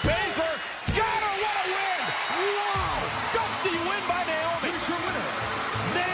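Two sharp slaps on a wrestling-ring mat about a second apart, the referee's pinfall count, over a loud arena crowd cheering. Music comes in under the cheering as the fall ends.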